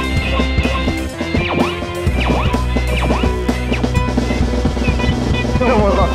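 A rock band playing a song with drums, guitar and bass, with several sliding pitch glides. The bass drops out for about a second near the start, then comes back.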